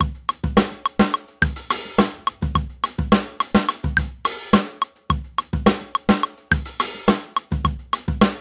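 Recorded drum-kit groove in 9/8 at 106 bpm looping in Ableton Live: kick, snare, hi-hat and cymbal hits in a quick, steady repeating pattern. A metronome clicks over it at a regular beat.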